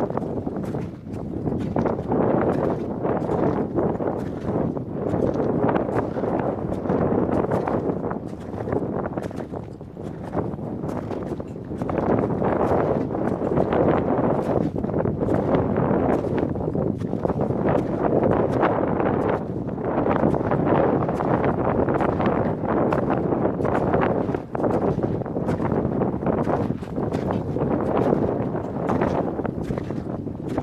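Wind buffeting an exposed camera microphone: a steady rushing noise that swells and eases, with many small knocks and crunches through it.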